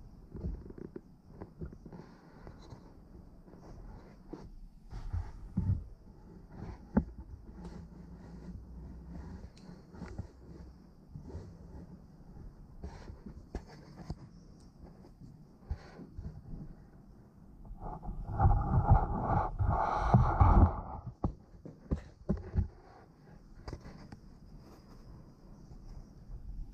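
Handling noise from a camera being moved and adjusted: scattered knocks and rubbing, with a louder stretch of rustling lasting about three seconds, two-thirds of the way through.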